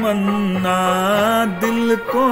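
A man singing a long held note of a Hindi film song, the pitch wavering and dipping briefly about one and a half seconds in.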